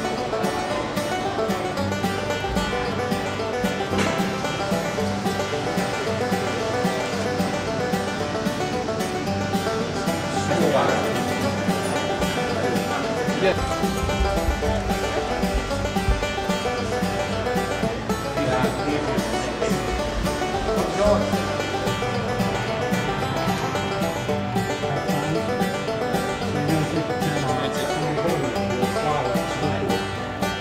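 Background music: a continuous acoustic instrumental led by plucked strings, in a country or bluegrass style.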